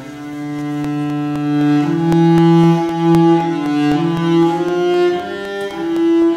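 Solo cello bowed, playing a slow passage of sustained notes: one long note swelling in loudness for the first two seconds, then a string of shorter notes changing about every half second to a second.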